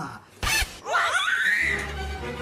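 Laughter with background music; a low music note comes in near the end.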